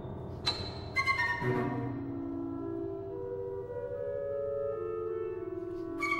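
Contemporary classical chamber ensemble playing. Two sharp struck attacks come about half a second and a second in, then overlapping held notes climb step by step over a low sustained drone.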